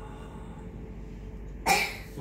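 A single short cough near the end, over faint sustained accompaniment notes held in a pause in the song.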